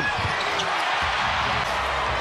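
Basketball game sound in a big arena: a ball bouncing on the hardwood court over a steady haze of crowd noise.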